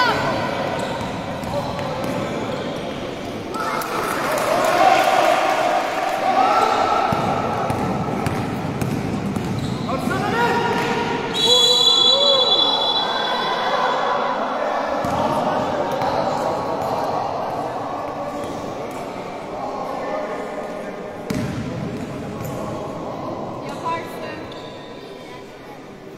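A basketball bouncing on a hardwood-style gym court with shoe and play noise, while players and spectators shout and call out in a large echoing sports hall; a brief high whistle sounds about halfway through.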